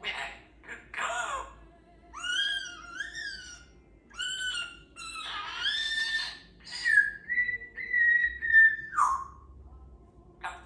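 Parrot whistling and chattering: a string of short calls that glide up and down in pitch, then a long, nearly level whistle from about seven seconds in, the loudest part, which drops away in a falling glide near nine seconds.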